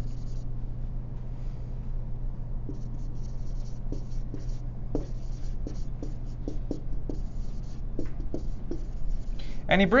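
Writing on a board, heard as irregular short scratchy strokes with a few light taps, over a steady low hum in the room.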